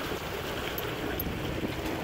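Steady rush of wind buffeting the microphone and water washing along the hull of an O'Day 22 sailboat under sail.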